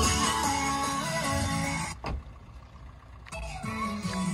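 A song playing through a Suzuki S-Cross's factory-fitted car speakers and infotainment system. About two seconds in, the music drops off sharply for just over a second, then comes back.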